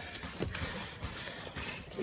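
Wrestlers' feet stepping and shuffling on a wrestling mat, making a few irregular thuds as they move in to grapple.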